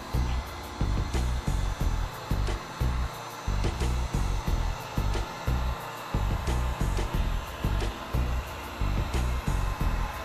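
Wagner electric heat gun blowing steadily over freshly poured epoxy resin, warming it so it flows and levels in the coaster mold. Music with a steady bass beat plays underneath.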